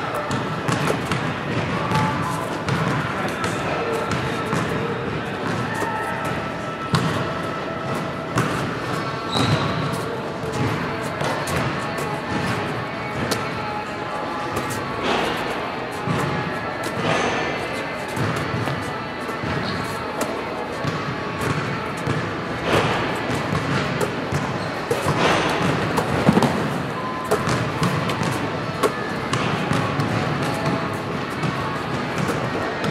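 Background music over basketballs bouncing and slapping into players' hands, with irregular thuds on the floor mats; the loudest thud comes about 26 seconds in.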